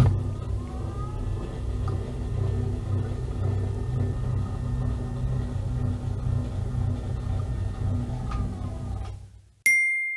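A steady low rumble with faint held tones, like an added sound effect or music bed. It stops abruptly shortly before the end, followed by a single bright ding.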